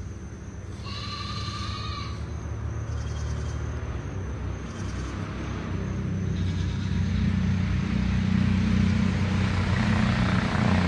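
A low engine drone that grows steadily louder, with a brief high-pitched call about a second in.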